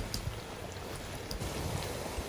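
Shallots, garlic and tomato paste sizzling steadily in oil in an enameled cast-iron pot while a spatula stirs them, with a few faint clicks of the spatula against the pot.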